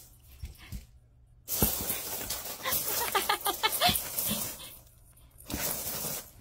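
Dry macaroni pasta rustling and rattling as a ferret digs and hops through it, starting about one and a half seconds in, with a quick run of short clucking sounds in the middle that fit the ferret's dooking during play.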